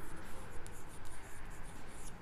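Chalk writing a word on a blackboard in a series of short scratching strokes.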